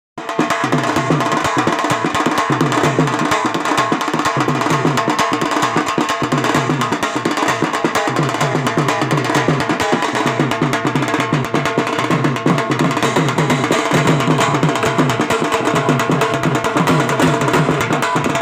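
Two large double-headed wedding band drums (band baja) beaten with sticks, a loud, fast, continuous rhythm with a repeating deep drum pattern.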